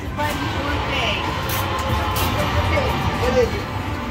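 Casino floor ambience: electronic slot machine jingles and tones over a steady wash of background chatter.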